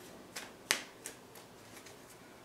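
A few faint, sharp clicks, about five in two seconds and the loudest a little under a second in, from a tarot deck being handled in the hand.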